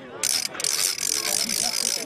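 Rapid, dry rattling in two bursts, a short one about a quarter second in and a longer one from about half a second in, with faint voices underneath.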